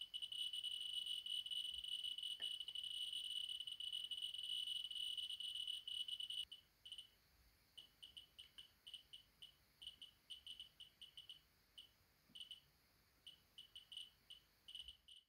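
Radiation survey meter's audio clicks from an Eberline HP-260 pancake probe, each count a short high chirp. Over the thorium-glass pendant the counts come so fast that they run into an almost continuous chirping. About six seconds in the rate drops to sparse, irregular chirps, a few a second, as the probe moves over a green glass dish that is much less radioactive.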